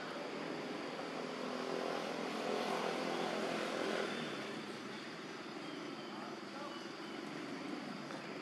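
An engine passing: a steady hum that swells about two to four seconds in, then eases off.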